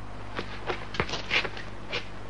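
A handful of short, sharp clicks and scuffs at uneven intervals, the loudest about halfway through, over a steady low electrical hum on an old film soundtrack.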